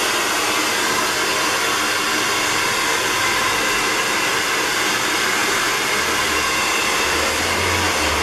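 Handheld hair dryer running steadily, blowing air onto long hair.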